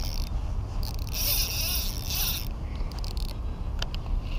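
A fishing reel whirring in several short stretches, the longest lasting over a second, as a big hooked fish is fought on the line. A steady low rumble runs underneath.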